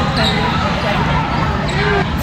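Basketball game sound in a gym: a ball bouncing on the hardwood court, mixed with players' and spectators' voices.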